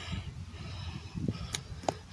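Quiet outdoor background noise with a low rumble, and two faint short clicks near the end.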